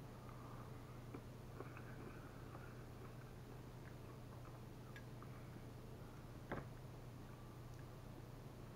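Near silence: quiet room tone with a steady low hum and a few faint clicks, one a little louder about six and a half seconds in.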